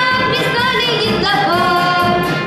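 A girl singing into a microphone with a brass band accompanying her, holding long notes and moving to a new sustained note a little past halfway through.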